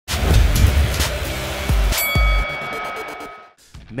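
Produced intro sting: a noisy rush with several heavy low booms, then a bright metallic ding about two seconds in that rings on and fades away over the next second and a half.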